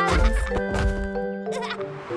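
Children's cartoon background music with held notes, joined about a quarter second in by a deep thud and a short warbling, bleat-like sound effect.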